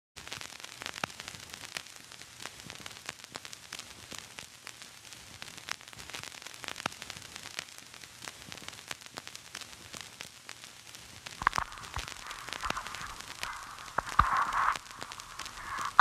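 Steady hiss strewn with irregular crackles and pops, like the surface noise of an old film or record soundtrack. From about eleven seconds in, a louder hazy noise joins it.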